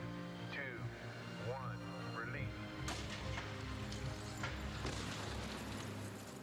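Airbag-cushioned Boeing Starliner test capsule dropping onto dirt: a single sharp thud about three seconds in, followed by a couple of seconds of rushing, scraping noise as it settles. Background music with low sustained tones runs under it.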